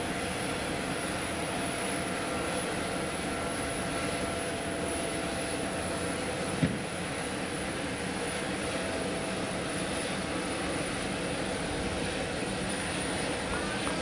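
A parked twin-engine business jet's turbofan engines running at idle, a steady rushing noise with a thin high whine. There is a single sharp knock about halfway through.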